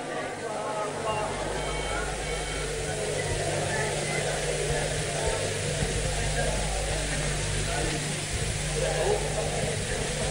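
Crowd voices murmuring and calling out in a live audience between phrases of a Quran recitation. Under them are a steady electrical hum and the hiss of an old recording.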